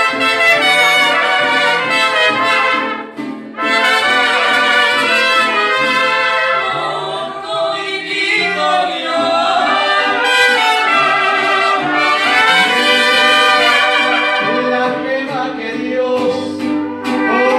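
Mariachi music led by trumpets playing a melodic passage, with a brief drop in level about three seconds in.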